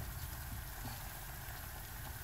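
Wet bread dough being mixed by hand in a large metal pot: faint, soft squishing over a steady low rumble.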